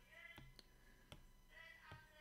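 Near silence: quiet room tone with about four faint clicks spread through it.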